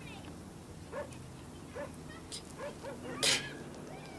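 A woman's quiet, broken whimpering sobs, a few short catches of voice, then a sharp noisy breath in near the end as she struggles to hold back tears.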